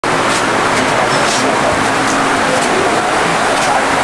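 A steady, loud rushing noise with a faint voice beneath it.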